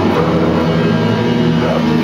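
Amateur rock band playing live: two electric guitars through small practice amps, playing a heavy metal part with steady sustained notes.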